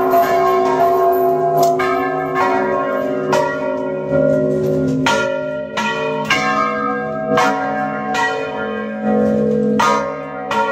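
Church tower bells rung by hand in a festive peal: several bells of different pitches struck in quick succession, about two strikes a second, their tones ringing on and overlapping.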